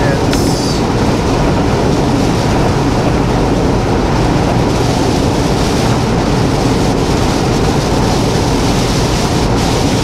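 Steady in-cab noise of a semi-truck cruising at highway speed: engine drone mixed with tyre noise on wet pavement.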